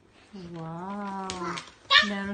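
A small child's drawn-out voice, one steady held note of about a second, with another child's voice starting just at the end.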